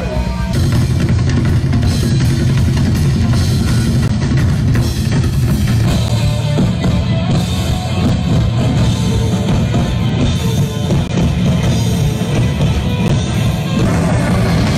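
Loud live rock music: a full band with electric guitar and bass, a drum kit and taiko drums playing together, heavy in the low end.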